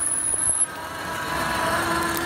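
Power wheelchair ramp of a Braun Ability MXV sliding back into the floor to its stowed position, its electric drive running steadily. A high thin whine stops about half a second in, and a lower steady hum comes in near the end.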